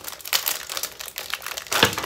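Clear plastic packaging crinkling as a wrapped kit is handled and pulled out of a small cardboard box. It makes irregular crackles, with a sharper one near the end.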